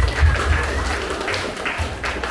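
A crowd of guests applauding, the clapping loudest at first and thinning out toward the end, with music playing underneath.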